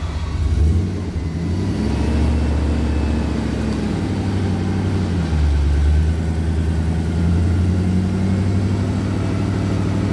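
Nissan 4x4's engine running under throttle in thick mud, rising in surges about half a second in and again around five to six seconds in, then holding steady.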